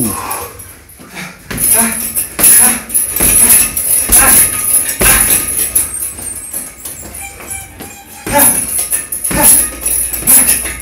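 Heavy punching bag being hit, with dull thuds at uneven intervals and the bag's hanging chains jingling.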